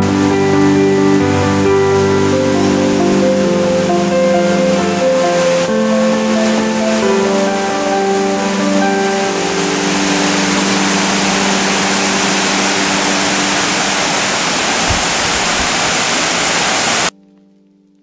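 Soft keyboard-style background music over the rush of flowing water; the music fades out about halfway, leaving the steady rushing noise, which cuts off abruptly about a second before the end.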